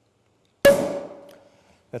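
Cork popping out of a bottle of bottle-fermented Cap Classique sparkling wine about two-thirds of a second in, followed by a hiss of escaping gas with a short ringing note that fades within a second. A good sound, taken as a good sign.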